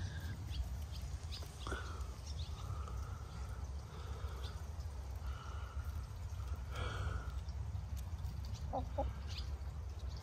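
Domestic hens giving a few soft, short calls while they feed on fruit, over a steady low rumble.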